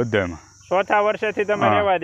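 A man speaking, with a steady high insect chirring behind him that fades out near the end.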